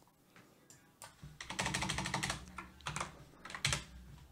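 Computer keyboard typing: a quick run of keystrokes starting about a second in, then a few more single keys near the end.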